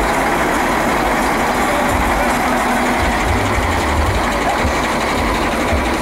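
Caterpillar motor grader's diesel engine running steadily: a loud, even mechanical noise over a deep rumble.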